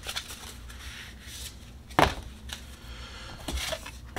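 Oracle cards handled by hand: faint rustling and sliding of card stock, with one sharp tap about halfway through and a few small ticks near the end.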